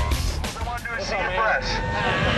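Indistinct voices over background music with a steady bass.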